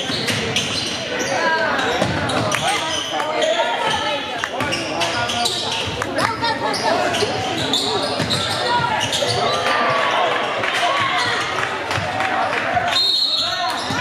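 A basketball dribbled and bouncing on a hardwood gym floor, repeated sharp bounces, with players and spectators calling out, all echoing in the large hall.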